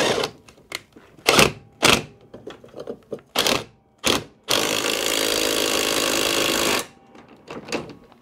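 Cordless wrench driving the lawn mower's 16 mm blade bolt tight: a few short blips, then one steady run of about two seconds as the bolt is done up.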